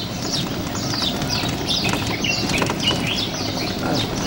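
Small birds chirping in a garden, many short falling chirps overlapping and repeating quickly, over a steady low background hum.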